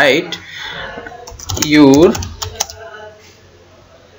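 A few keystrokes on a computer keyboard, typing a short word, with a brief spoken sound about two seconds in.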